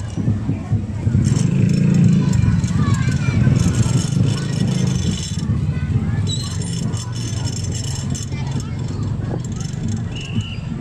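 Crowd voices chattering with a motor vehicle's engine running close by. The engine hum is loudest for the first half and then eases.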